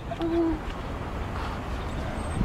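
A person's brief low hum-like vocal sound, about a third of a second long, near the start, over steady outdoor background noise.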